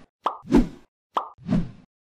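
Pop sound effects of an animated subscribe-button graphic, heard twice about a second apart. Each is a short click followed by a fuller pop.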